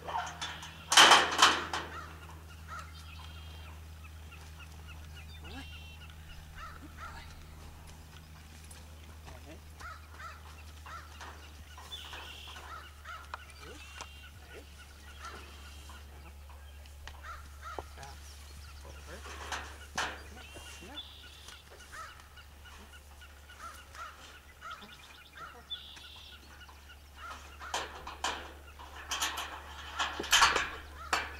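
A metal tube farm gate rattling and clanking as it is unlatched and pushed open from horseback, with a loud rattle about a second in and a run of clanks near the end. Birds call faintly in the background.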